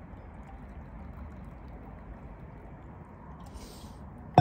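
Tea being poured from a stainless-steel vacuum flask into its metal cup, a soft steady pour, with a brief hiss near the end.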